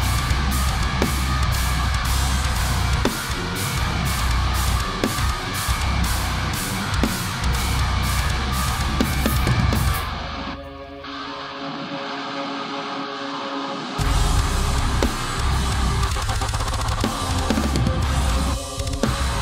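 Djent/thall metal song with heavy down-tuned guitars, and a drum kit played along with cymbals struck in a steady pulse. About ten seconds in, the drums and low end drop out, leaving a thin, filtered guitar part for about four seconds. Then the full band and drums come back in.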